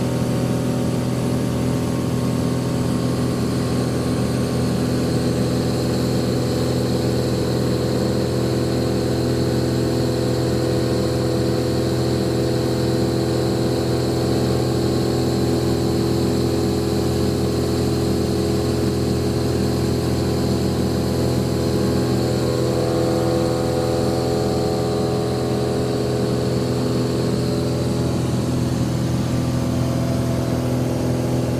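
Steady drone of a light aircraft's piston engine and propeller in cruise, heard from inside the cabin, its tone shifting slightly about two-thirds of the way through.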